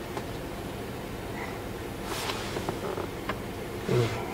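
Low steady hum inside a pickup's cabin, with a brief rustle about two seconds in and a few faint clicks after it.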